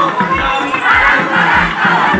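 A crowd of marchers shouting together, many voices overlapping, with a regular beat of low thuds underneath.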